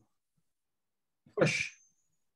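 A single spoken word, "push", about a second and a half in, ending in a drawn-out hissing "sh"; the rest is silence.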